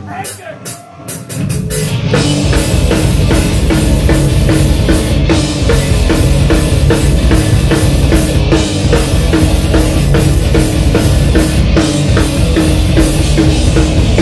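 Heavy metal band playing live: a few scattered drum hits and guitar notes, then about two seconds in the full band comes in loud, with distorted electric guitar, bass and a steady, driving drum beat.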